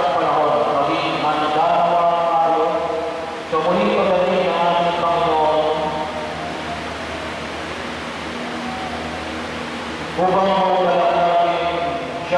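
A man's voice chanting a sung part of the Mass into a microphone, in drawn-out sung phrases. It breaks off for about four seconds after the middle and resumes near the end.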